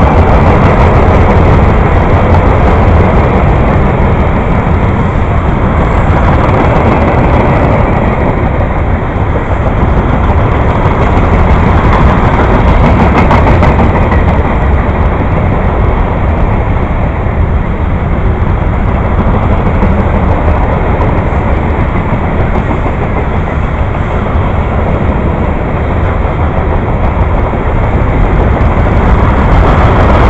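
Loaded CSX coal hopper cars rolling past at close range: a loud, steady rumble of steel wheels on the rails.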